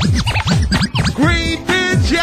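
Rave music with a sound scratched rapidly back and forth on a record, its pitch sweeping up and down about six times a second, giving way a little past halfway to a held, steady synth or vocal tone.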